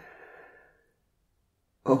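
A man's short breathy sigh lasting about half a second, opening with a soft mouth click. He starts to speak again near the end.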